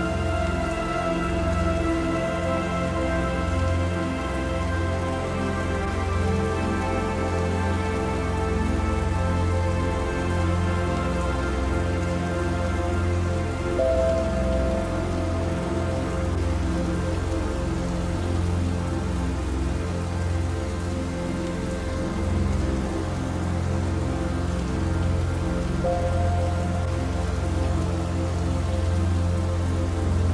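Steady rain falling, mixed with soft, slow music of long held notes; new notes come in around the middle and again near the end.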